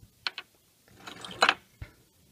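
Small metallic clicks and clinks: two quick ticks, a short clinking rattle about a second in, and one more click near the end, as spent brass cartridge casings and other small metal relics are handled and shifted on a table.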